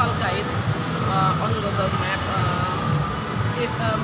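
People talking over a steady low background hum. The speech is not clear enough for the words to come through.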